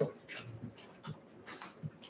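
Footsteps in a meeting room: soft low steps roughly every half second, with a sharp click at the start and a few faint squeaks and rustles.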